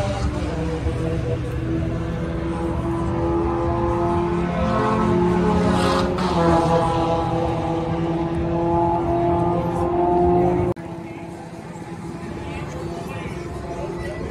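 An engine running steadily with a slowly wavering pitch. It cuts off abruptly about eleven seconds in, leaving quieter crowd background.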